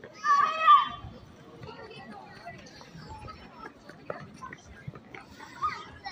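A child's loud, high shout lasting under a second just after the start, with a shorter call near the end, over low scattered chatter of people around.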